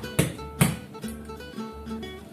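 Background music on acoustic guitar in a flamenco style, with a few sharp plucked strokes over held notes.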